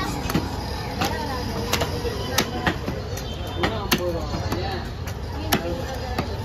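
Knife and cleaver strokes on a wooden log chopping block while an orange snapper is scaled and cut: repeated sharp knocks, roughly two a second and unevenly spaced. Voices carry in the background.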